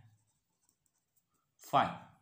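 Faint sound of a pen writing on paper in a pause between a man's words, with his voice coming back near the end.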